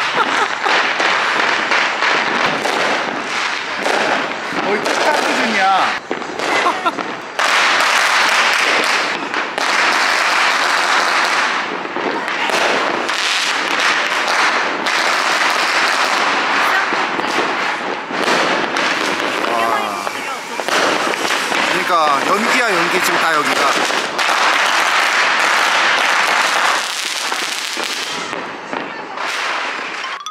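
Firecrackers and small fireworks going off in quick succession, a dense, near-continuous crackle of overlapping bangs with a few short lulls, and rockets bursting overhead.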